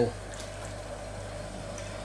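Four-kilowatt continuous stripping still running on sugar wash: a steady boiling hiss with a low hum underneath.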